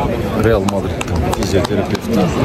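Voices talking or singing that the words cannot be made out of, with a few short sharp knocks in between.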